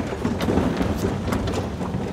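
A seated audience rising to its feet together: a dense rumble of shuffling and rustling, with scattered clicks and knocks from folding auditorium seats springing up.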